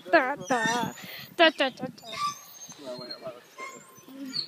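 Human voices making wavering, wobbling-pitch calls in the first second, then scattered short bits of voice, growing quieter toward the end.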